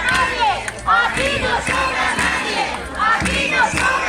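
A crowd of striking workers on a picket line shouting together, many loud voices overlapping.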